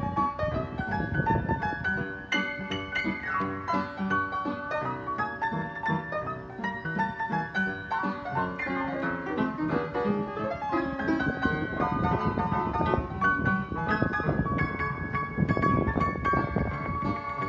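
Freshly tuned upright piano, its front panels off and the action exposed, played with both hands: treble chords and melody over bass notes, with the bass heaviest at the start and again near the end.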